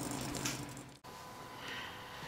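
Quiet room tone with a faint steady background hum. The sound cuts out abruptly about a second in, then a fainter hiss continues.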